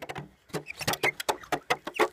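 A slatted wooden disc fixed to a tree being turned by hand on its mount, giving a quick run of clicks and knocks, about four or five a second.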